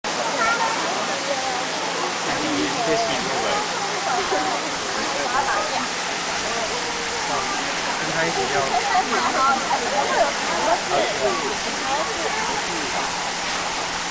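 A steady rush of running water, fairly loud, under the overlapping chatter of a crowd of adults and children.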